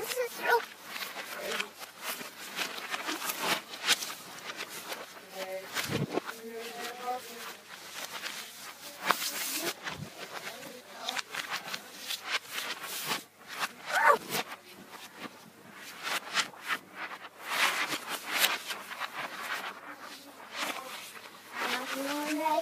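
Girls' voices played backwards, unintelligible, broken up by frequent clicks, rustles and knocks from movement.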